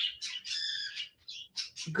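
A pet bird in a cage chirping in the room: a run of short high calls, with one longer call of several layered tones about half a second in.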